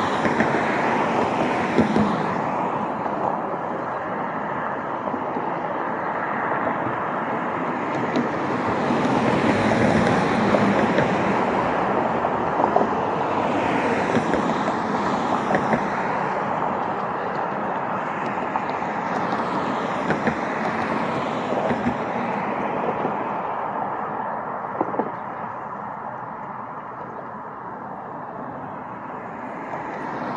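Road traffic on a nearby street: a continuous wash of tyre and engine noise that swells as cars pass, easing off near the end.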